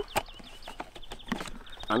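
Light plastic clicks and knocks as a Muc-Off cleaner bottle with its foam-cannon head is fitted onto a pressure-washer spray gun, with the sharp clicks scattered through the moment.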